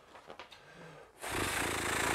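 A long folded paper instruction leaflet being unfolded and slid across a table top: near quiet at first, then a dense, rattling rustle and scrape of paper starting about a second in.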